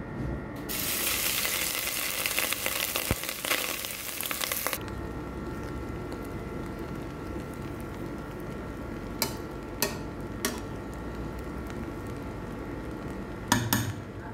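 Drained, par-boiled basmati rice tipped into a pot of hot olive oil, sizzling loudly for about four seconds. After that a quieter steady sound runs on, with a few light clicks near the end.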